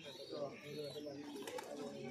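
A flock of domestic pigeons cooing, many overlapping coos at once.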